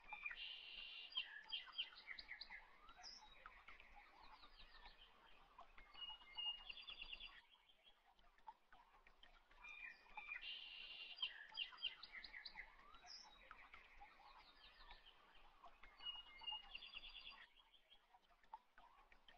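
Faint high chirps and short trills like birdsong, in a pattern that repeats almost exactly about every ten seconds, as a looped background track does.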